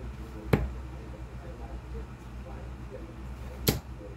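Two 15 g Winmau Dennis Priestley steel-tip darts striking a bristle dartboard, each landing as a single sharp thud: one about half a second in, and a louder second one near the end.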